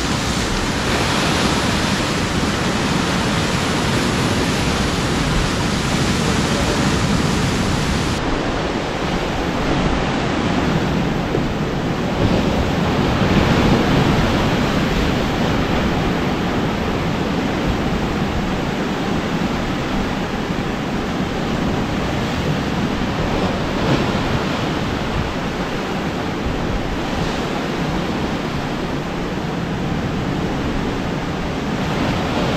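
Sea waves breaking and washing against a rocky shore: a loud, continuous rush that swells with each breaking wave, the biggest surge about halfway through.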